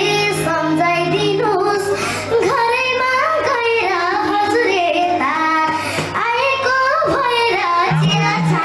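A young girl singing a melody into a microphone over live instrumental backing, with a steady low note held underneath.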